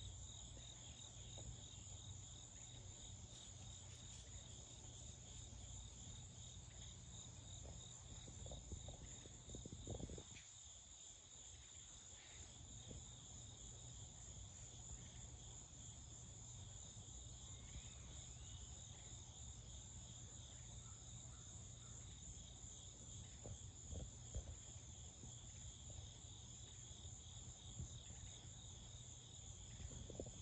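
Faint, steady outdoor chorus of insects: a continuous high-pitched trill, with a low steady rumble underneath.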